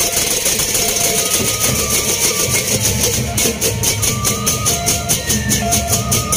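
Gendang beleq ensemble playing: large double-headed barrel drums beating under fast, steady clashing of hand cymbals, with short ringing metal tones. The cymbals grow louder about three seconds in.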